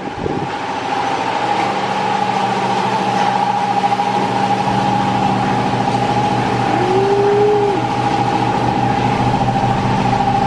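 Car engine idling steadily, with a steady high-pitched whine over an even low pulsing. One short rising-and-falling tone comes about seven seconds in.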